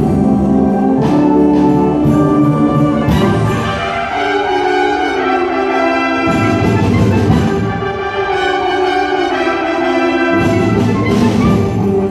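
Student concert band playing Christmas music: brass and woodwinds in sustained chords. The low parts drop out twice and come back in strongly near the end.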